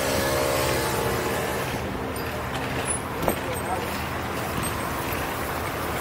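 Steady road traffic noise heard from a moving bicycle, with one short click about three seconds in.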